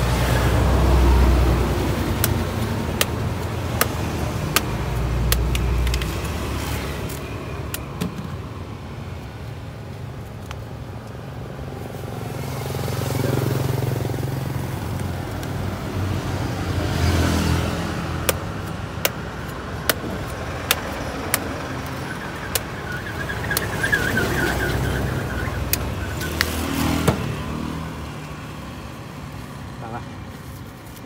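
Heavy knife chopping into a palm fruit's husk: sharp separate strikes, often about a second apart in runs. Road traffic passes behind it, its rumble swelling and fading three times.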